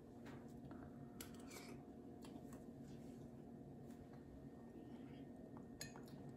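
Near silence over a low steady hum, with a handful of faint, sharp clicks: soft eating sounds as a spoonful of hot chowder is tasted.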